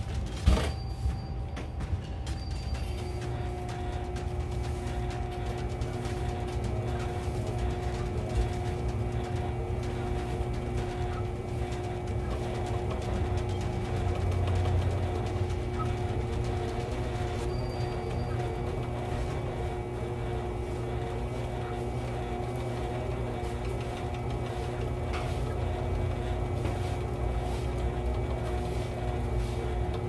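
Motor-driven line-winding rig spinning a conventional fishing reel to wind hollow-core braid back onto the spool: a steady hum that settles to a constant pitch about three seconds in.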